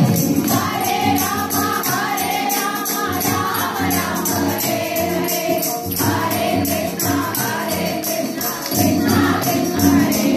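A group of women singing a Hindu devotional namajapam chant together, with a steady rhythmic beat of hand claps.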